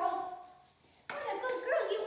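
Field Spaniel vocalizing in high, sliding-pitch calls: one tails off early, then a second starts about a second in.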